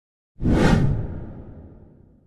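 A whoosh sound effect that starts suddenly about half a second in, with a low rumble under it, and fades away over about a second and a half.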